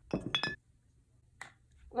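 A glass beer bottle clinked in a toast: a couple of quick clinks with a short glassy ring, then quiet.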